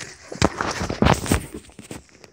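Close rustling and knocking of a phone being handled and moved, a quick run of scrapes and knocks that dies away near the end.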